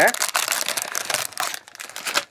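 Plastic snack pouch crinkling and crackling as it is pulled out of a cardboard box, a dense run of crackles.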